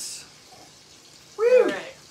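A faint steady hiss, then about one and a half seconds in a single short wordless vocal sound, an exclamation whose pitch rises and falls.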